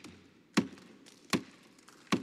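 Wooden gavel struck on the desk in sharp single knocks about three-quarters of a second apart, twice in these seconds: the formal gavel strikes that declare a summit officially open.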